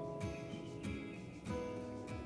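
Quiet background music: guitar notes plucked about every half-second, each ringing on briefly.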